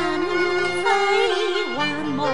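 Cantonese opera (yueju) duet music: a singer holds a long wavering melismatic note over traditional Chinese instrumental accompaniment, the pitch dipping near the end.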